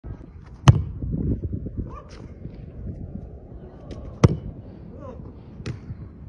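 Football kicked on artificial turf: sharp thuds of a boot striking the ball. The loudest is about half a second in, another about four seconds in, and a lighter one near the end.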